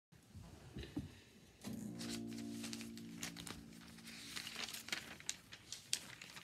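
Acoustic guitar strummed once, its chord ringing out and fading over about three seconds, amid rustling and sharp clicks from the phone being handled.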